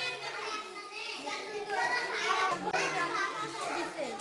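A group of young children talking and calling out at once, several voices overlapping.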